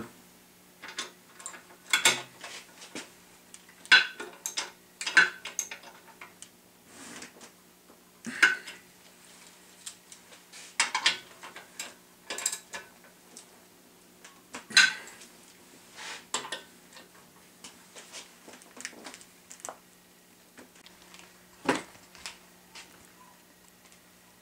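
Scattered metallic clinks and taps, a dozen or so at uneven intervals, of an adjustable wrench against the steel bolts and column base of a floor drill press as its mounting bolts are snugged down.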